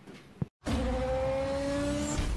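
A click and a short dead gap, then from about half a second in a car-engine sound effect with a slowly rising pitch, the opening of a logo sting.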